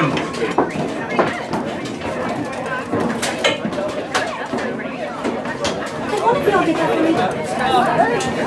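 Overlapping chatter of many voices, with scattered sharp taps.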